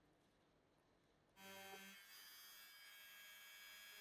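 Near silence, with a very faint steady hum of several tones coming in about a second and a half in.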